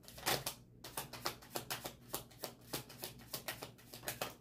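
A tarot deck being shuffled by hand, overhand: a steady run of soft card clicks, about five a second.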